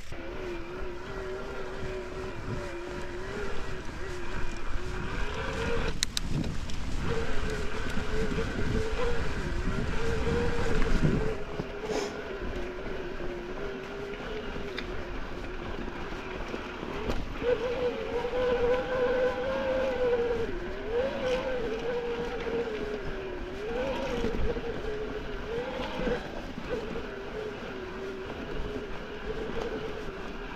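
Electric mountain bike's motor whining, its pitch wavering up and down with pedalling effort, over tyre rumble and wind on a dirt trail. The rumble swells in the first half, and a couple of sharp knocks from the bike come at about six and twelve seconds.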